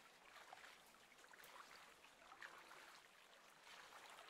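Near silence: faint lapping and trickling of small wavelets against the lake's edge, with soft irregular splashes.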